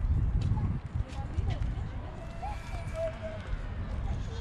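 Footsteps on stone paving and uneven wind rumble on the microphone of a handheld camera, with faint voices in the background.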